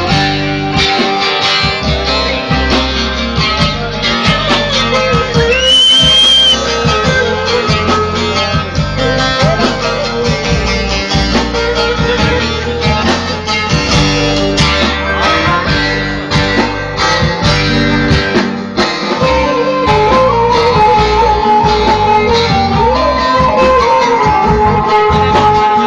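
Live Turkish folk band playing an instrumental passage: a bağlama (long-necked saz) plucking a fast melody over an electric bağlama and keyboard accompaniment. A brief rising whistle sounds about six seconds in.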